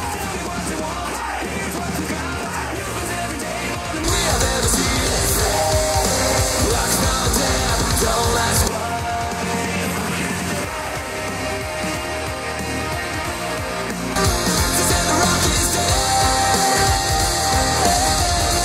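Hard rock track with shouted vocals played at maximum volume through portable Bluetooth speakers, alternating between the Soundcore Motion X600 in spatial mode and the Tribit Stormbox Blast. The Stormbox Blast is clearly louder and brighter. The sound switches speaker about 4 s in, again near 9 s, and again about 14 s in.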